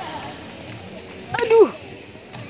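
Sharp racket hits on a badminton shuttlecock in a large hall, one faint just after the start and one about one and a half seconds in. The second hit is followed at once by a loud, falling-pitch exclamation like a dismayed "aduh".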